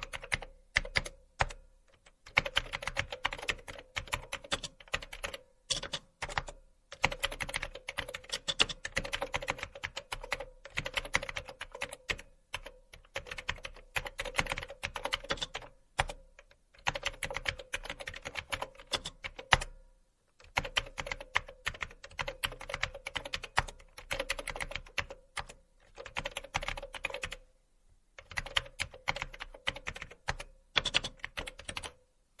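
Typing on a computer keyboard: rapid clicking in runs of several seconds, broken by short pauses, over a steady faint hum.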